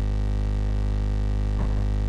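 A loud, steady electrical hum: a deep buzz with many even overtones, unchanging throughout. A brief faint voice sound comes near the end.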